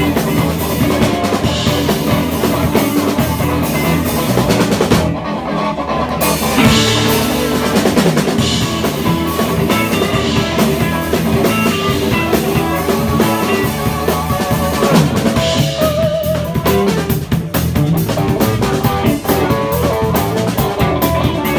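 Live blues band playing an instrumental passage: a drum kit with cymbals and rimshots under guitar lines. The cymbals drop out for about a second, about five seconds in.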